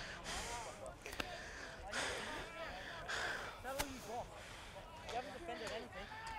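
Faint, distant voices of players calling on the field, with a couple of close breaths and a few light clicks on a body-worn microphone.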